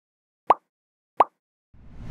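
Two short pop sound effects, each a quick upward-sliding plop, about two-thirds of a second apart, marking the two thumbnails popping onto the screen. A swelling rush of noise starts near the end.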